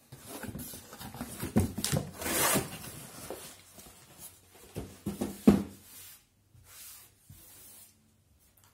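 Large cardboard shipping box being handled and moved off a table: cardboard rubbing and scraping with several irregular knocks, the loudest about five and a half seconds in.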